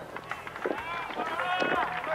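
Raised voices calling out across an open-air rugby ground as a kick at goal is taken: several drawn-out shouts starting under a second in, over a low outdoor background.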